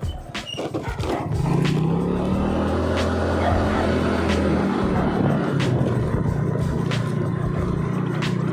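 Motorcycle engine running as the bike rides along. Its note climbs about a second in, then holds steady, with a few scattered knocks.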